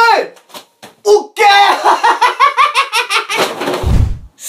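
A man's voice in rapid, wordless vocalizing, opening with a quick falling cry and running in fast syllables, then a low thump near the end.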